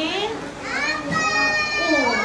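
Young children's voices, with one high, drawn-out call held for about a second starting partway through.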